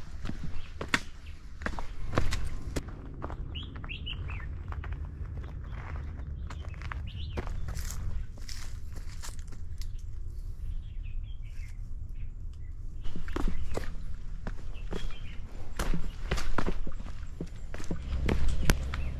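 Footsteps on a dirt and stone forest path, a steady run of steps that thins out in the middle and picks up again near the end, with birds chirping a few times over a low steady rumble.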